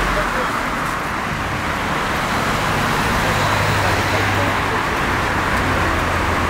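Road traffic: a steady rush of passing cars' tyres and engines, with a low engine hum joining about halfway through.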